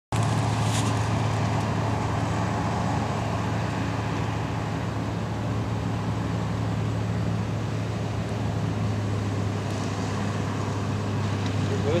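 Diesel engines of a sugarcane harvester and the tractor pulling a cane transporter running steadily, a constant low drone, as the harvester loads chopped cane into the bin.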